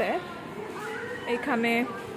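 A high-pitched voice making a few drawn-out, sliding wordless sounds, meow-like rather than words.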